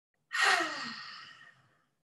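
A woman's deep breath out, a long audible sigh that starts strong and falls in pitch as it fades over about a second and a half, the exhale of a deep relaxing breath.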